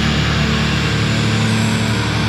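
Death metal recording: a dense, steady wall of heavily distorted guitars and low end, without distinct drum hits.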